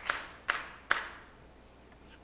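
Three sharp hits about half a second apart, each fading quickly.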